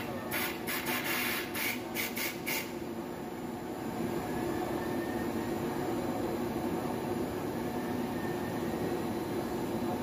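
Blowing machine running with a steady drone, with a quick series of short hisses in the first two and a half seconds.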